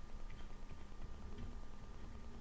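Faint irregular ticks of a pen stylus tapping on a graphics tablet while handwriting formulas, over a faint steady electrical hum.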